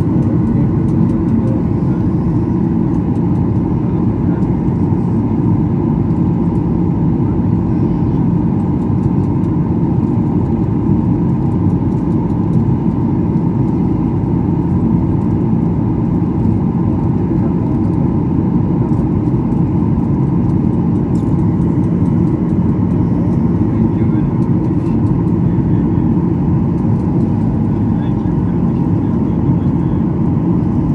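Steady cabin noise of a jet airliner in flight, heard from a window seat beside the wing-mounted turbofan engine: an even, low rushing drone of engine and airflow with a faint steady hum underneath.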